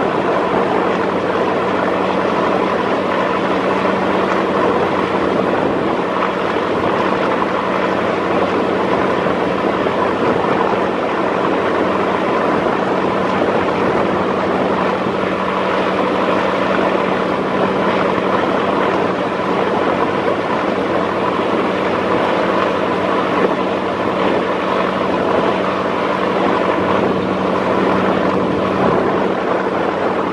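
Steady, unbroken drone of a nearby river passenger launch's diesel engine, a constant low hum with higher tones over a rushing wash of water and wind.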